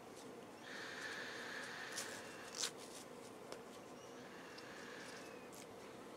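Faint breathing through a Forsheda A4 gas mask: two soft hissing breaths a few seconds apart. Between them a light click as the head straps are tightened.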